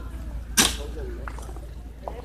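A single short, sharp burst of noise about half a second in, with faint distant voices after it.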